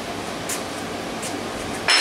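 Steady background hiss, then near the end a short loud clink as a cut piece of ceramic tile is set down on the workbench.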